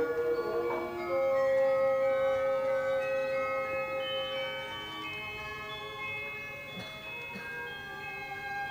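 Orchestral ballet music: a slow passage of sustained, overlapping held notes, with one long note held for several seconds starting about a second in, then gradually getting softer.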